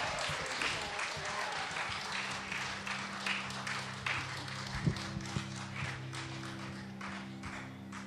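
Club audience applauding at the end of a song, the clapping thinning out. About two seconds in, a low steady hum comes in under it, with a couple of thumps near the middle.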